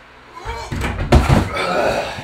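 A climber grunting with effort on a steep bouldering wall, then a heavy thud a little past halfway as he drops off the holds and lands, with loud breathing after it.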